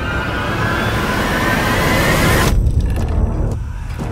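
Trailer sound design: a loud rising swell of noise with several tones gliding upward together, cutting off suddenly about two and a half seconds in and leaving a low rumble.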